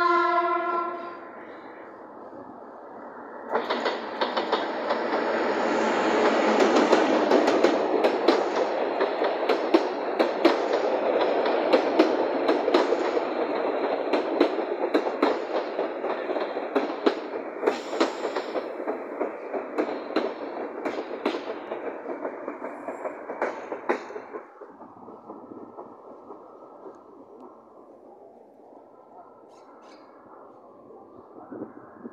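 A short blast from the train's horn, then a G22 diesel locomotive and its passenger coaches run past close by. For about twenty seconds the wheels clatter over the rail joints in a dense run of clicks, and the sound fades away as the train pulls into the station.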